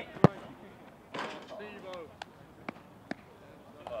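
A football kicked hard in a shot at goal: one sharp, loud thud of boot on ball about a quarter second in. A few fainter, short ball knocks follow later.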